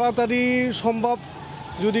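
A man speaking in an outdoor interview, drawing out one hesitant sound before pausing; in the short pause a faint steady hum of traffic is heard before he starts talking again near the end.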